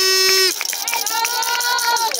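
Spectators celebrating a goal: a steady, held horn blast that stops about half a second in, with scattered hand claps, then shouting voices.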